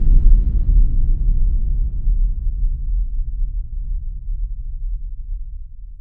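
A deep, low rumble from a cinematic trailer boom, fading slowly and evenly.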